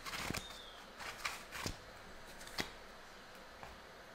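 A tarot deck being shuffled overhand by hand: faint, soft flicks and slaps of cards, a few of them in the first three seconds, then quieter.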